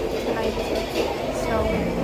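Restaurant background noise: indistinct voices over a steady low rumble.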